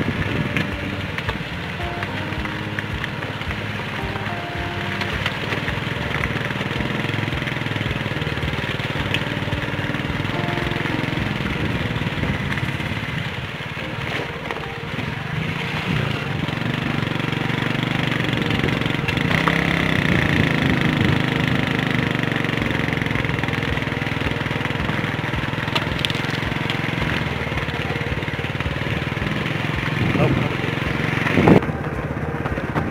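Vehicle engine running steadily while driving over a rough gravel desert track, with wind buffeting the microphone.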